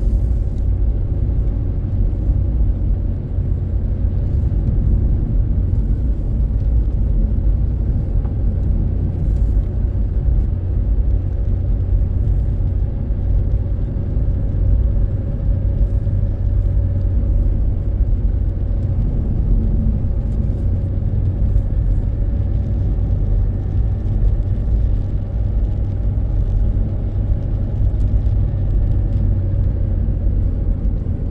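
Car's engine and tyre noise on the road, heard from inside the cabin while driving: a steady low rumble.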